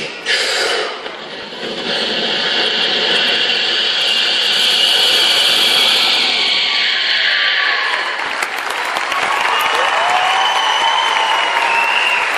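Audience applauding, swelling to full strength about two seconds in, with whistling near the end.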